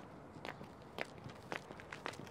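Footsteps of a person walking on a gritty path, about two steps a second.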